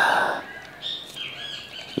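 Birds chirping in the trees, a string of short high repeated chirps, with a brief burst of rustling noise at the very start.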